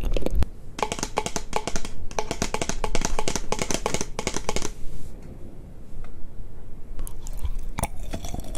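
Close-miked ASMR mouth sounds of chewing chocolate: a few sharp clicks, then about four seconds of dense, rapid clicking. A quieter stretch follows, with a few more clicks near the end.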